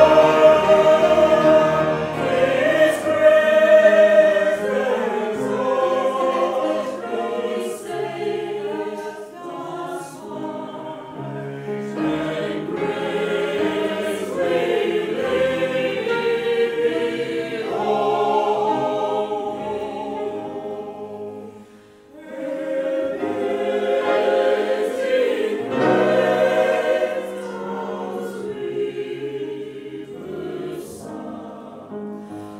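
Choir singing in parts with grand piano accompaniment, in long held phrases. The music breaks off briefly about two-thirds of the way through, then the choir comes back in.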